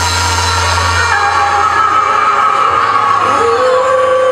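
A sung vocal with long held notes over loud backing music. The steady bass under it drops out about a second in.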